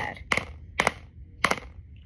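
Four sharp knocks of a hard object striking an old iPad's glass screen, spaced about half a second apart, without the screen breaking.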